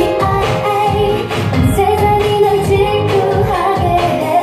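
K-pop dance track with a woman singing over a steady beat, played loud.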